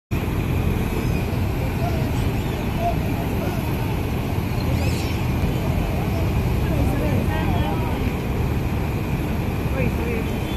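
Steady rushing of a muddy, flood-swollen river, with people talking faintly in the background.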